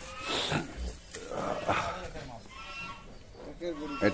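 Bulls making a few short, noisy sounds close by, with faint voices in the background near the end.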